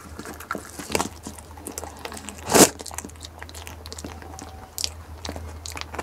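A goat biting and chewing ripe jackfruit flesh up close: irregular short wet crunches, with one much louder crunch about halfway through.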